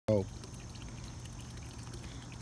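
A short vocal sound right at the start, then a steady, soft trickle of water running into a garden pond.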